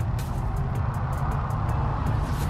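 Low, steady rumble of wind buffeting the microphone, with faint background music.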